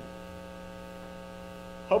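Steady electrical mains hum, a stack of even unchanging tones, during a pause in a man's speech; he starts speaking again just before the end.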